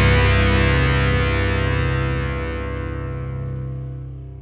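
Final chord of a rock song ringing out: distorted electric guitars and bass sustain and fade away steadily, the treble dying first.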